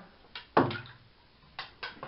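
A few short, sharp clicks, two of them close together near the end, and a brief low voiced sound from a man about half a second in.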